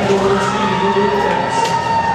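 Music playing over the noise of a large cheering crowd, echoing through a big arena, with some held notes.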